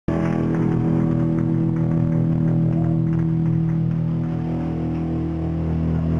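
Amplified electric guitar holding one long distorted chord through the amp, a steady drone.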